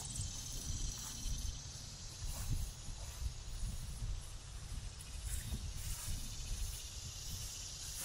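Quiet summer outdoor ambience: a steady high hiss of insects, with an uneven low rumble of wind on the microphone.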